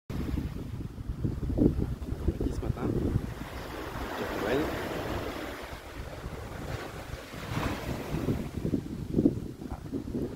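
Wind buffeting the phone's microphone in irregular gusts, a low rumbling rush.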